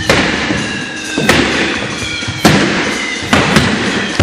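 Jumping stilts landing hard on a sports-hall floor: five sharp bangs with hall echo, the first three about a second apart and two close together near the end, over steady high music tones.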